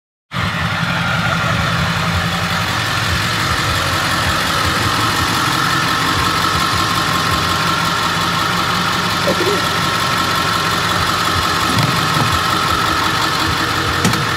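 School bus engine idling steadily, heard from inside the bus, with a constant whine running through it. It cuts in just after the start.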